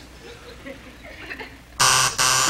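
A quiet pause with faint room murmur, then near the end a loud, flat game-show buzzer sounds abruptly.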